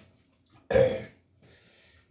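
A man burps once: a short, loud burp about three-quarters of a second in. A faint hiss follows near the end.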